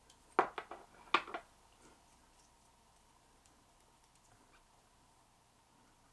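Small fly-tying scissors snipping, trimming the legs on a fly: a handful of quick sharp snips in two short groups within the first second and a half.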